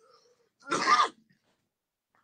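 A man clears his throat once, a short rough sound of about half a second, a little over half a second in.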